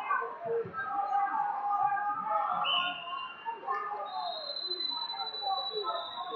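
Two steady whistle blasts over crowd chatter: the first starts about two and a half seconds in and lasts about a second, then a higher-pitched one is held for about two seconds near the end. These are referees' whistles, one likely starting this wrestling match.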